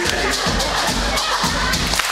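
Live band playing a steady drum groove with bass under a crowd's noise.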